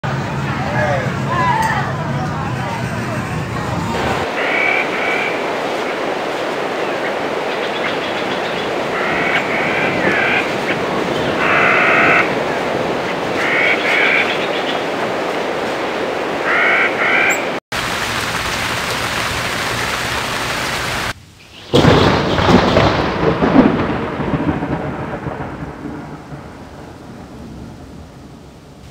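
Steady rain with short repeated higher calls over it, broken by sudden cuts. About 22 seconds in a loud thunderclap breaks and rumbles away, slowly fading.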